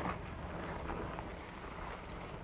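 Wind rushing over the microphone and the steady rumble of a Trek Fuel EX 9.8's oversized 27.5+ tyres rolling on a dry dirt track, fairly quiet, with a brighter hiss in the second half.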